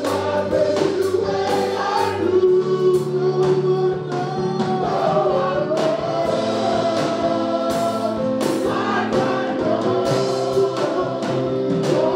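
Gospel praise-and-worship singing: a group of men and women singing together, over a band with sustained chords and a steady drum beat.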